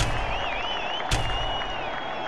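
Sports show title sting: a sharp hit at the start and another about a second in, over a steady crowd-like noise with a wavering high whistle between the hits, fading slowly.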